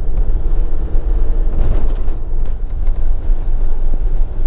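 Motorhome engine and tyre noise heard inside the cab while driving: a steady low rumble.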